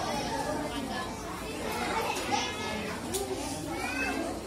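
Indistinct background chatter of several voices, children's among them, at a low steady level with no one voice standing out.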